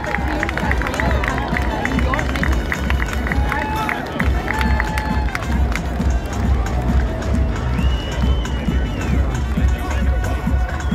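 Music with a steady bass beat playing over an outdoor PA loudspeaker, with crowd voices and shouts mixed in.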